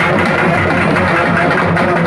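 Urumi melam folk drum ensemble playing loudly: drums beating a fast, continuous rhythm, with a few held tones.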